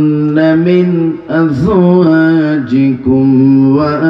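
A man chanting a Quranic verse in Arabic in the melodic tajweed style, amplified through a microphone. He draws the words out in long held, wavering notes, with a few short breaks for breath between phrases.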